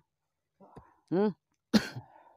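A single short vocal syllable about a second in, then one sharp cough near the end.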